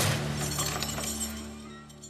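Something brittle shattering with a loud crash, followed by scattered clinks of falling pieces, over a dramatic music score that fades out.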